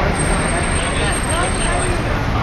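Street ambience: a steady low traffic rumble with indistinct voices over it.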